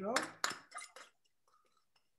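A few short scrapes and clinks in the first second as a small dish of chopped cilantro is tipped and scraped into a mixing bowl, with the end of a spoken word at the very start.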